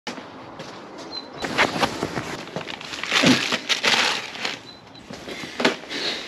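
Plastic bag around new clutch plates and an oil filter crinkling and rustling as it is handled, in irregular bursts, loudest about three to four and a half seconds in.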